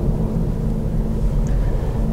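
Steady low rumble of tyre and road noise inside the cabin of a moving Kia e-Niro electric car, with no engine sound.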